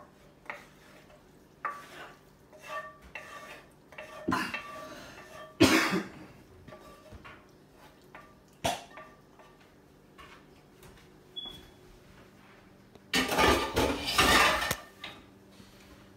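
A wooden spatula scraping and knocking cooked ground meat out of a cast-iron skillet into a mixing bowl, a series of short scrapes and taps with a couple of sharper knocks. Near the end, a louder clatter of cookware lasting about a second and a half.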